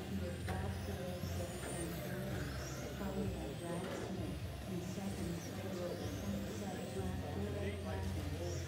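Several electric RC touring cars' motors whining, the high pitches repeatedly rising and falling as the cars accelerate and brake around the track, over a steady low hum in the hall.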